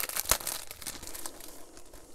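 Crinkling and rustling of a paper sheet of self-adhesive glitter gems being handled, with a few sharp crackles in the first half second and quieter rustling after.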